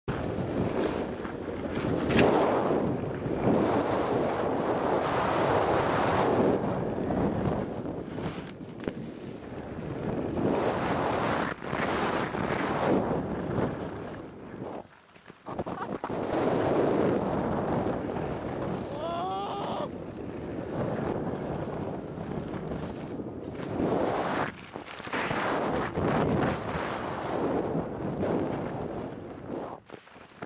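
Wind rushing over a moving microphone while skiing downhill, mixed with skis sliding and scraping over packed snow. The noise rises and falls in surges and briefly drops away about halfway through.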